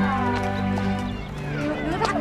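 Women's dialogue over steady, sustained background music, a drama score with a held low tone.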